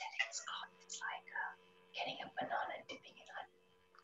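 Quiet speech from a participant on a video call, with a faint steady hum underneath.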